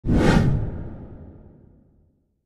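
A whoosh sound effect for an animated logo intro, starting suddenly and fading out over about a second and a half.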